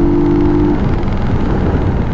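Brixton Rayburn motorcycle riding at a steady road speed: engine running under a dense rush of wind and road noise. A steady low engine note drops away about a third of the way in, leaving the rumble and wind.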